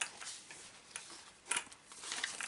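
A few light clicks and knocks as the hard plastic chassis and parts of an Arrma Mojave RC truck are handled and turned over; the sharpest click comes about a second and a half in.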